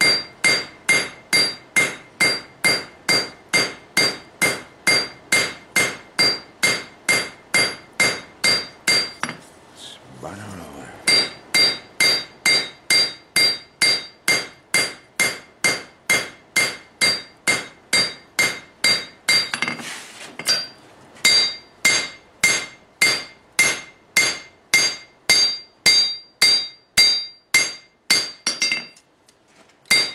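A blacksmith's hand hammer strikes a red-hot railroad spike blade on a steel anvil at about three blows a second. Each blow gives a bright metallic ring. The rhythm breaks off briefly about ten seconds and twenty seconds in, and again just before the end.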